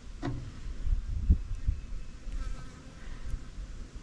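An insect buzzing close by, with a few faint clicks from small metal parts as a retaining clip is worked off a starter solenoid.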